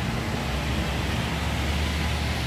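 Steady outdoor background noise: an even low rumble with a hiss over it.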